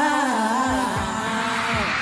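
A male singer's live vocal through a handheld stage microphone, holding and bending long notes over the song's backing music, with a few low thuds in the second half.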